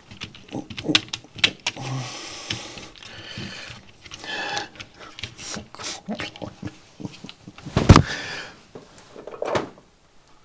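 Close handling noise from a perfboard and its components: scattered clicks, taps and rattles as leads are pushed through the board and it is turned over and set back into its clamp holder. Just before eight seconds in comes one loud thump, the loudest sound, as the microphone is knocked.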